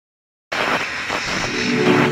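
Logo-intro sound effect: a loud rushing whoosh starts about half a second in and swells, with a pitched chord building up through it.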